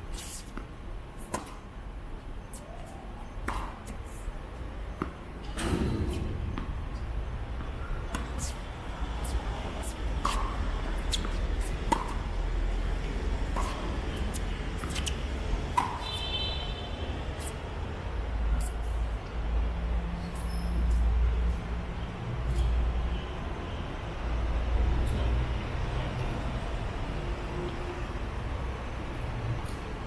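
Tennis balls being struck by rackets and bouncing on an outdoor hard court, sharp single knocks every few seconds, with a low rumble underneath that grows from about six seconds in.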